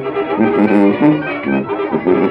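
A brass band playing a dance tune, the horns sounding short, repeated notes in a steady rhythm.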